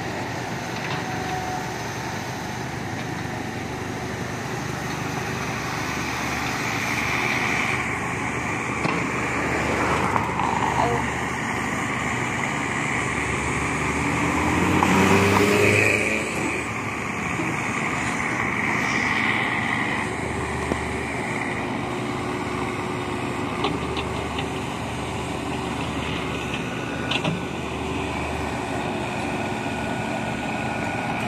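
Komatsu crawler excavator running under load as it tracks up the ramps onto a truck's deck, the engine growing loudest about halfway through as the machine climbs.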